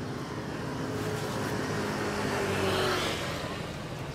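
A motor vehicle passing on the street: its engine hum grows louder to a peak about three seconds in, then fades as it goes by.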